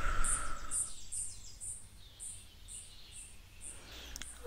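Meadow ambience: a cricket-like insect chirping high and evenly, about twice a second, with a soft rush of noise in the first second.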